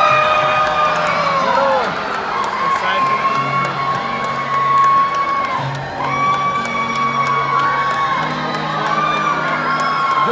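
Crowd of children in the stands shouting and screaming excitedly to be picked as the volunteer, in long held high calls one after another, over background music.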